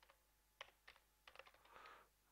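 Faint typing on a computer keyboard, a word keyed in as short, irregular runs of clicks.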